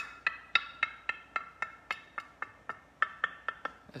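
Repeated light tapping on a large glass jug, about four taps a second, each tap ringing briefly.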